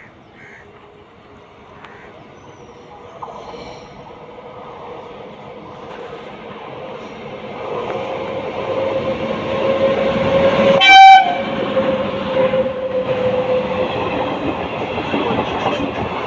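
Indian Railways WAG-9H electric locomotive hauling an express train, approaching and growing steadily louder, with a steady tone over the running noise. About eleven seconds in it gives one short, loud horn blast, and its coaches then rumble past close by.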